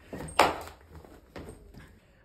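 An iPhone 14 Pro fitted with a cheap tempered-glass screen protector, dropped and hitting the floor: one sharp, loud clatter just under half a second in, then a smaller knock about a second later. The phone and glass come through the drop undamaged.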